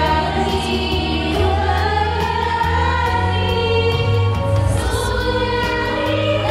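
A choir singing a slow song over instrumental accompaniment, with a steady bass line and a light ticking beat about three times a second.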